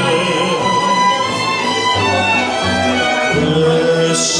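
A live mariachi band playing, with several violins bowing the melody together over guitars and a bass line. The bass notes shift about two seconds in and again near the end.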